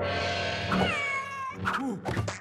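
A cartoon cat's voice: a drawn-out, meow-like cry whose pitch bends downward about a second in, over background music.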